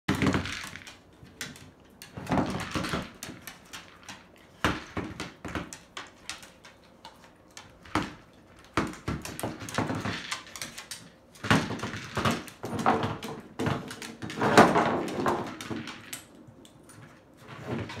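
K9 Connectables Kibble Connector, a plastic treat-dispensing puzzle toy, being nosed and pushed by a dog across a wooden floor: irregular knocks and clatters as it bumps and rolls, with short pauses between bouts.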